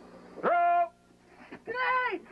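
Two loud shouts from soldiers in a grenade throwing bay: a short, steady held yell about half a second in, then a second shout near the end, as the grenade is thrown and the thrower drops behind the wall.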